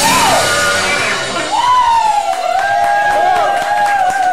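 Live psychedelic rock band near the end of a song: the singer shouts into the microphone over a loud crash of the band, then a wavering, siren-like held tone carries on as the drums and bass drop away about two seconds in.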